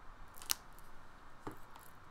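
Handling noise from a cardboard CD/DVD box-set book: a sharp rustle about half a second in and a softer one about a second later.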